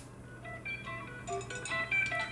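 Music played back quietly from cassette through the Magnavox 1V9041's built-in speaker, single pitched notes coming in about half a second in: the leftover earlier music recording on the tape, just ahead of the stretch he recorded over.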